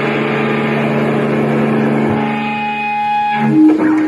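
Live death metal band: distorted electric guitar holding a sustained chord that rings on without drums, then moving to a new held note about three and a half seconds in.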